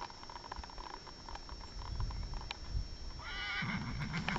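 A wild horse whinnies near the end: a short, wavering high call lasting under a second, over faint scattered ticks.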